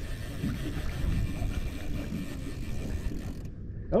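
Conventional level-wind fishing reel being cranked steadily while reeling in a hooked blue catfish, its gears whirring and clicking over a steady low rumble of wind and boat. The high hiss drops away suddenly near the end.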